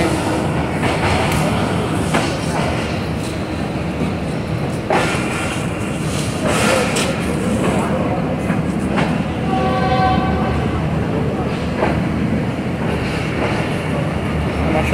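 Tezgam Express passenger coaches rolling slowly along the track, a steady rumble of wheels with scattered clicks and clanks over rail joints, and a brief high tone about ten seconds in.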